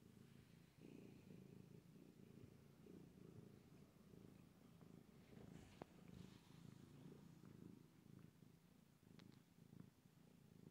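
Domestic cat purring softly and steadily while being stroked, a continuous low pulsing rumble. A single brief click sounds a little before six seconds in.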